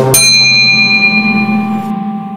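A bright bell chime sound effect strikes once just after the start and rings out, fading over about a second and a half, over intro background music.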